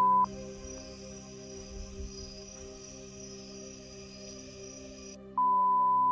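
A 1 kHz censor bleep over soft ambient background music. The bleep sounds briefly at the very start and again from about five and a half seconds in, holding steady and louder than the music.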